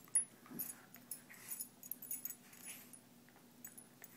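A West Highland White Terrier and a Cairn Terrier play-fighting, with short, irregular dog noises and scuffling, and a sharp sound just after the start.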